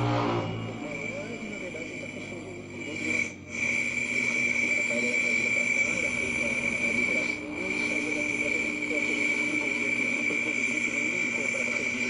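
Homemade crystal (galena) radio's audio as it is tuned across the AM band: faint broadcast speech under hiss, with a steady high-pitched whistle that grows stronger a few seconds in. The sound cuts out briefly twice.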